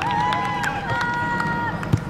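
Footballers on the pitch shouting: two long, drawn-out calls one after the other. Scattered ball knocks sound behind them, with one loud thump of a kicked ball just before the end.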